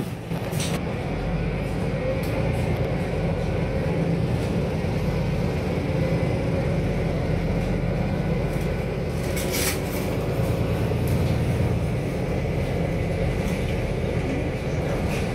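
Steady engine and road rumble heard inside the cabin of a MAN A22 Euro 6 single-deck bus driving along, with a few brief knocks from the cabin, the clearest a little before ten seconds in.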